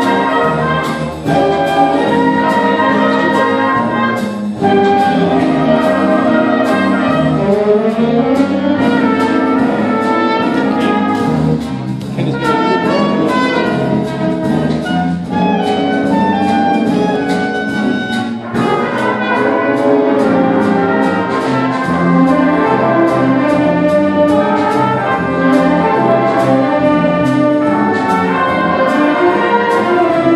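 High school band playing a big band jazz arrangement live, with trumpets and trombones carrying the tune over a steady beat.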